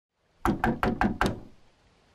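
Five quick knocks on a door in an even rhythm, about five a second, fading out soon after.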